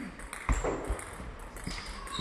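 Table tennis ball clicking off bats and table in a quick rally, with the loudest hit about half a second in. A brief shoe squeak on the hall floor near the end.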